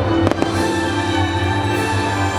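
Fireworks display with loud show music playing throughout. A quick cluster of sharp firework reports comes about a quarter to half a second in.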